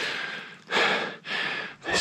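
A man breathing hard, about three heavy breaths in two seconds: out of breath from climbing a steep side hill through deep snow.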